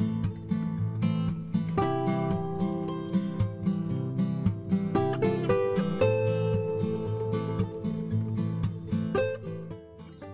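Background music led by acoustic guitar, plucked and strummed, dropping in level near the end.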